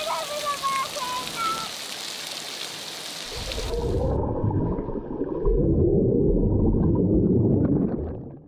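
Swimming pool water splashing, with short high voice-like calls over it. About three and a half seconds in it switches to loud, muffled underwater water noise with the high end gone, which fades out near the end.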